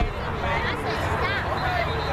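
Indistinct chatter of several people talking at once, with no one voice standing out, over a low steady rumble.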